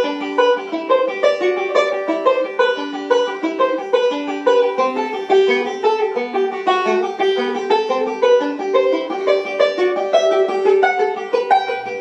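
A five-string banjo played solo in rapid picked rolls, a quick unbroken stream of plucked notes as the fretting hand moves up and down the neck into the high positions.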